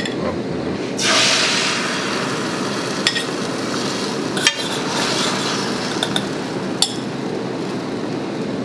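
Beaten egg poured into a hot frying pan, sizzling sharply about a second in and then hissing steadily while it fries, with a few short clinks of a utensil scraping the egg out of a ceramic bowl.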